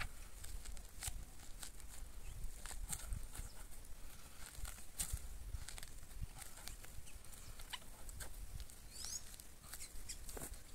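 Plastic film and paper crinkling now and then as a corn silage sample is rolled up and pressed tight by hand to squeeze the air out, over a low steady rumble. A short rising chirp comes near the end.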